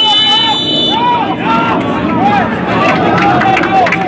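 A referee's whistle blown once in a short, shrill blast right at the start, followed by players and spectators shouting over one another.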